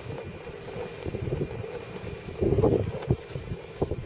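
Low rumble of wind on the microphone mixed with the burning of the pellet-fuelled woodgas stove's flames. It swells briefly about two and a half seconds in, over a faint steady hum.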